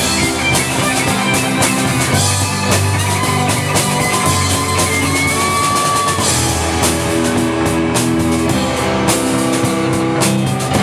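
Live rock band playing: electric guitars, bass, keyboards and drum kit keeping a steady beat, with a long held high note about five seconds in.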